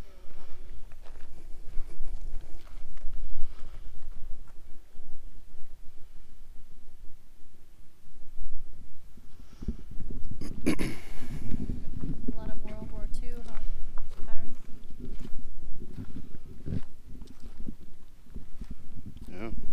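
Low, gusting rumble of wind on the camera's microphone, heavier from about ten seconds in, with faint indistinct voices.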